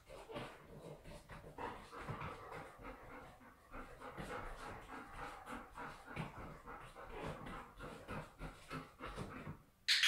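A golden retriever panting, faint and rhythmic, in quick even breaths.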